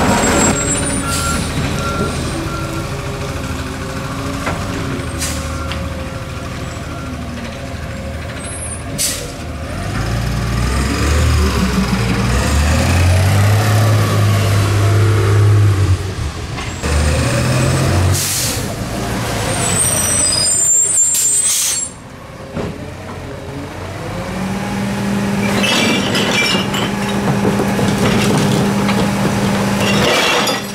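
Natural-gas Autocar ACX garbage truck engine pulling the truck along, its note rising and falling. Air brakes hiss a couple of times past the middle as it stops, and the engine then settles into a steady hum.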